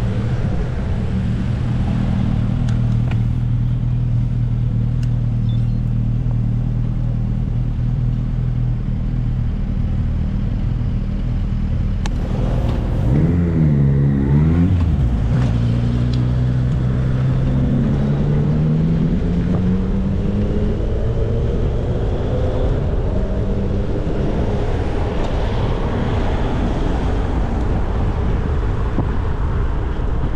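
Motor traffic engines close by. A steady engine hum runs for about twelve seconds, then the pitch dips and climbs again as engines rev and accelerate, over steady road and wind noise.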